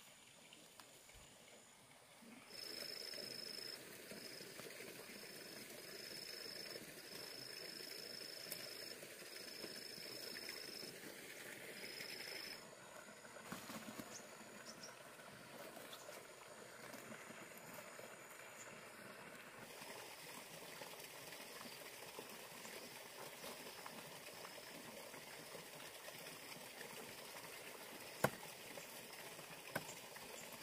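Quiet rural outdoor ambience: a steady hiss, with a high, thin tone repeating in phrases of about a second for roughly ten seconds near the start, and one sharp click near the end.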